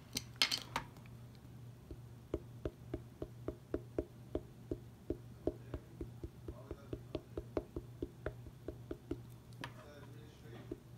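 A small ink pad dabbed again and again onto a clear stamp on a plastic stamping platform: light, sharp taps at about three a second, after a few louder clicks near the start.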